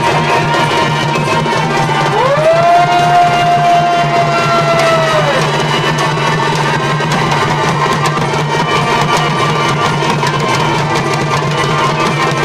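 Chhau dance music: drums beating steadily under a reed-pipe (shehnai) melody, which slides up into one long held note about two seconds in and falls away a few seconds later.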